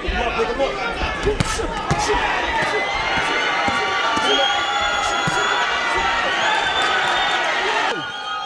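Arena crowd cheering and shouting at a knockdown, swelling into a sustained cheer from about two seconds in. A few sharp smacks of punches landing come in the first two seconds.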